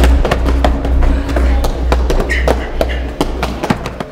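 Quick slaps, taps and thuds of hands striking and blocking body and arms in a kung fu drill, over a loud, uneven low rumble that fades away just before the end.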